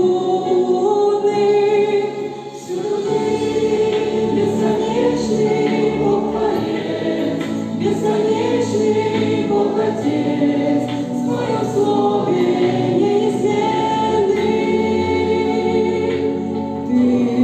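Congregation of standing worshippers singing a hymn together, holding long sung notes, with a short break between lines about two seconds in.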